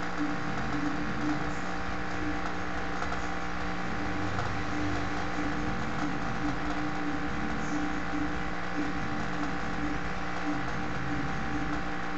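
A steady mechanical hum, several constant tones over an even hiss, with no change in level.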